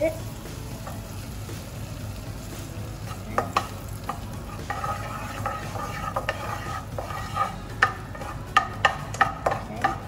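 Butter melting and sizzling in a wok on a gas flame while a spatula stirs it, knocking and scraping against the pan. The knocks come more often and louder in the second half.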